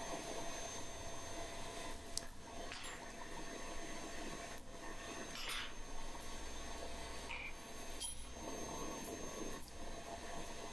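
Coal forge's blower running steadily, air rushing through the freshly lit fire as a steady whoosh with a faint hum. A few faint knocks come through over it.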